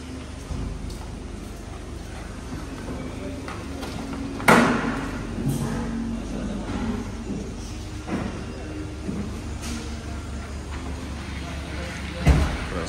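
Haval H9's engine idling with a steady low hum, while a few sharp thuds and knocks sound over it. The loudest comes about four and a half seconds in, with smaller ones later.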